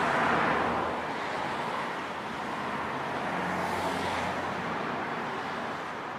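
Steady road-traffic noise, an even rush that swells briefly a little past the middle.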